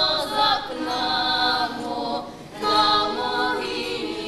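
Girls' voices singing in chorus a Ukrainian folk song, in long held notes, with a short breath pause a little past the middle.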